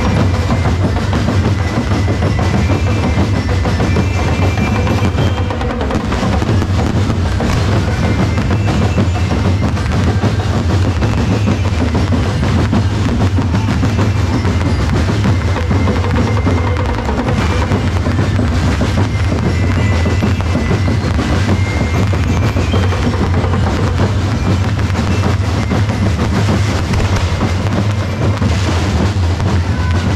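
Drums playing continuously in dense, rapid strokes with a deep, steady low end, as from a drum band.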